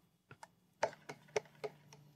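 Half a dozen light clicks and knocks of a glass measuring cup and a plastic stirring paddle against a plastic pitcher while a sugar mixture is poured in and stirred.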